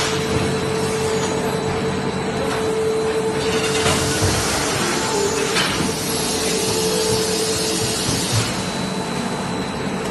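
Plastic sheet extrusion line running: a steady mechanical drone with a constant hum tone under it, from the rollers and winder as the sheet is taken up. A brighter hiss swells up about three and a half seconds in and again near the end.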